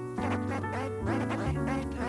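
Vinyl record being scratched by hand on a Technics SL-1210 turntable, the sample chopped in and out with the mixer's fader, over a chill hip-hop beat with a steady bass line.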